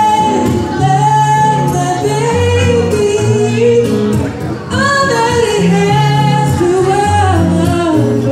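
A man singing an R&B song live into a microphone in a high register, accompanied by a strummed acoustic guitar.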